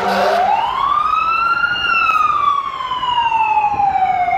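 Fire engine siren on a slow wail: the pitch climbs for about two seconds, then slowly falls through the rest, starting to climb again just after.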